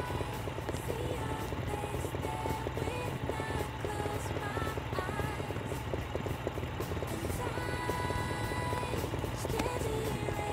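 A motorcycle engine idling steadily as a low, pulsing rumble, under background music.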